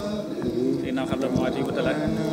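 Indistinct voices of several people talking at once, overlapping in a room.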